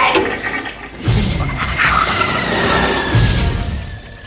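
Cartoon sound effect of a toilet flushing: a rushing swirl of water with a low rumble that starts about a second in and fades toward the end, under background music.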